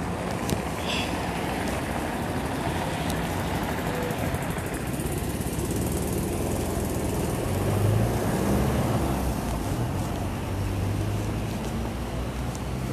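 Steady city street traffic noise, with a vehicle engine hum growing louder about two thirds of the way through.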